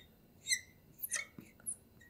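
A marker squeaking on a glass lightboard while writing: several short, high squeaks, one for each stroke.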